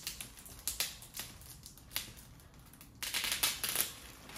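Clear plastic bag crinkling as it is pulled and worked loose around a cardboard box: a few short crackles in the first two seconds, then a longer, louder crinkling about three seconds in that lasts nearly a second.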